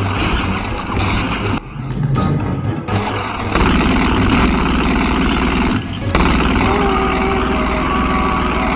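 Glock 26 pistol fired over and over into a sofa, a dense run of shots with a couple of brief breaks, over a film score.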